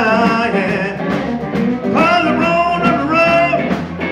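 Live electric blues band playing: electric guitars and bass, with two long bending melodic phrases riding over them.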